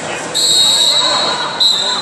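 Referee's whistle blown twice: a long blast of about a second, then a short one near the end, over the chatter of the hall.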